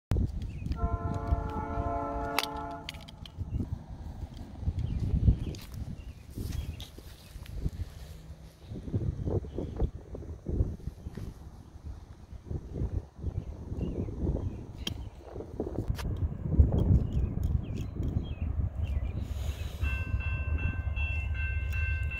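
A distant train horn sounds one chord for about two seconds near the start, from the train that is approaching. Through the rest, wind rumbles on the microphone, and near the end a grade-crossing bell starts ringing.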